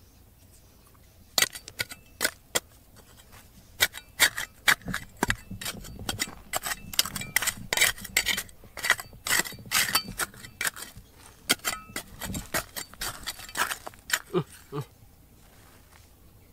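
A small metal hand trowel scraping and digging through dry gravelly soil, with stones knocking and clinking against the blade in a fast, irregular run of sharp scrapes and clicks. It starts a little over a second in and stops shortly before the end.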